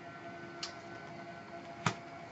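Two small clicks from a tarot card being handled and set down on the table: a faint one about half a second in and a sharper one near the end, over a faint steady hum.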